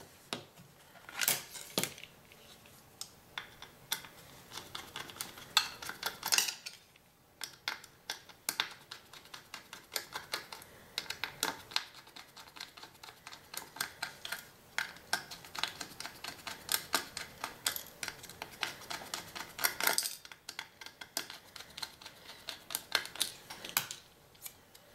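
Small screwdriver working the tiny screws out of a hard drive's platter clamp: a steady, irregular run of light metal clicks and ticks, with a few louder clinks along the way.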